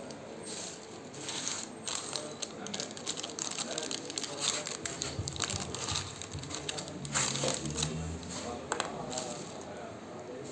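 Crinkling, crackling and rustling of a plastic bag and a foil test-kit pouch handled and torn open by gloved hands, a run of irregular clicks and crackles.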